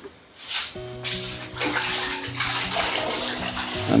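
Water splashing on a tiled bathroom floor during cleaning, in repeated splashes starting about half a second in. Background music with steady notes plays underneath.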